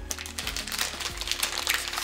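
Plastic sweet wrappers crinkling and rustling as they are pulled open, over background music.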